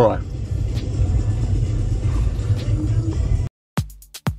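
Steady low rumble of road and engine noise inside a car's cabin. About three and a half seconds in, it cuts off abruptly and electronic dance music with a regular kick-drum beat starts.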